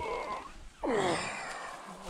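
A man's groan of effort, a pitched sound that slides down about a second in, as a mountain bike is heaved up over a field gate.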